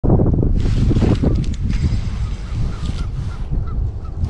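Wind buffeting the microphone with a loud, uneven low rumble. From about two seconds in come a handful of short, faint, high calls, about one every half second.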